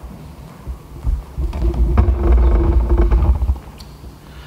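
Microphone handling noise: heavy low rumbling and thumps for a couple of seconds in the middle, with a steady hum under it and a few clicks.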